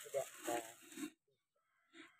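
A person's voice murmuring briefly, a low wordless sound lasting about the first second.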